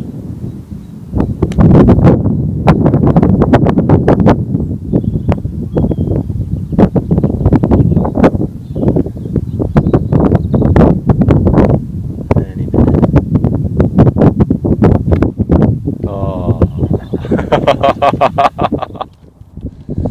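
Wind buffeting the microphone: a loud, gusting rumble with constant flutter. A man laughs near the end.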